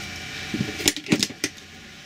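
A few light clicks and rattles of wire and hand tools being picked up and handled on a workbench, over a steady faint background hum.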